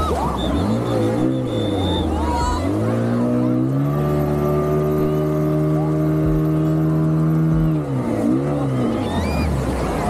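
A speedboat's outboard motor revving under way, its pitch surging up and down, then holding steady and high for about four seconds before dropping and surging again, over the rush of water and wind.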